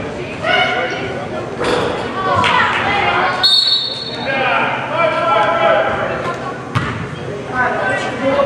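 Live sound of a youth basketball game in a large, echoing gym: players and spectators shouting over a ball bouncing on the hardwood floor, with a brief shrill tone about three and a half seconds in.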